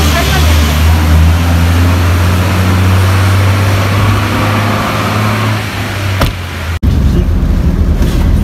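A vehicle engine idling with a steady low hum over a wash of street noise. There is a short knock about six seconds in. The sound then breaks off abruptly and gives way to a different steady rumble.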